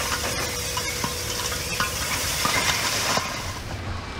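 Loose waste tipping out of a raised telehandler bucket into a trailer: a crackling clatter of falling debris that thins out about three seconds in, over the machine's diesel engine running.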